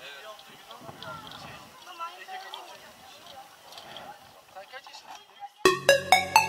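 Indistinct chatter of people talking in the background, then electronic dance music with a steady, punchy beat starts abruptly near the end.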